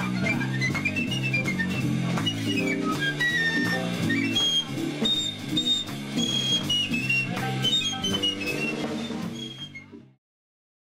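Live Latin jazz parranda music: a high flute melody over plucked strings and percussion, fading out in the last second.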